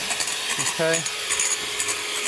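Electric hand mixer running steadily at a constant pitch, its beaters whisking egg whites and caster sugar into meringue in a bowl.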